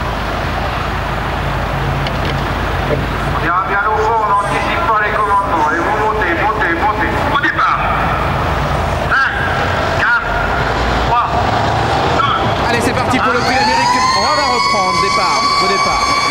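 Large racecourse crowd noise swelling as the trotters set off. About thirteen seconds in, a siren sounds, rising in pitch and then holding one steady wail: the false-start signal.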